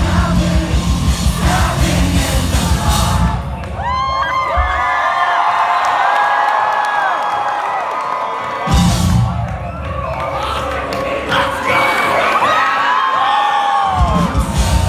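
Live heavy-metal band playing loud, distorted guitars, bass and drums. About four seconds in, the band drops out and a crowd yells and sings for several seconds. The full band crashes back in around nine seconds and plays on with vocals.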